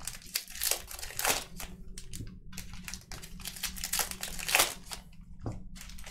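Baseball card pack wrapper being torn open and crinkled in the hands, a run of irregular crackles.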